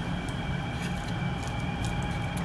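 A steady background hum with a few faint held tones, over which come faint, soft crackles of a fish fillet being pressed into dry breadcrumbs by hand.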